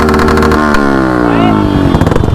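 A motorcycle engine revved and held, then its revs falling away over the last second or so.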